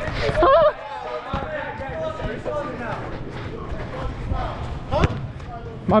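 A man's shouted voice at the start, then scattered thuds of a soccer ball being kicked on artificial turf, with one sharp thump about five seconds in.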